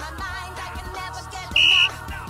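A short, loud referee's whistle blast, one steady shrill note about a third of a second long, near the end. Background music plays throughout.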